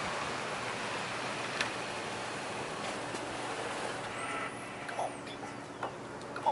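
Steady outdoor road traffic noise, a wash of passing cars, with a couple of faint clicks near the end.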